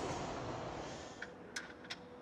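Faint steady background noise fading away, then three light, sharp clicks in the last second, over a faint steady hum.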